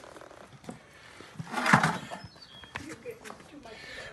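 A horse snorts once, a short breathy blow about one and a half seconds in. A few light knocks come before and after it as the hoof is handled and set on a metal hoof stand.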